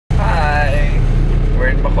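Steady low rumble of a car driving, heard from inside the cabin, with a man's voice over it.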